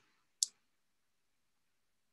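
A single short, sharp click about half a second in, with near silence around it.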